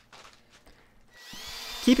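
About a second of near silence, then a RIDGID 18V cordless drill spins up. Its rising whine levels off into a steady whine as it bores a pocket hole through a handheld pocket-hole jig into a cedar 2x4.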